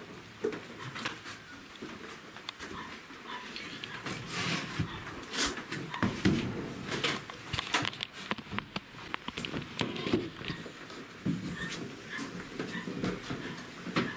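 Handling noise in a small wooden hut: scattered knocks, clicks and rustles as a heavy book is set down on wooden planks and the camera is moved about and set up.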